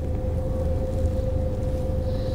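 Car idling, heard from inside the car: a low rumble under a steady mid-pitched hum.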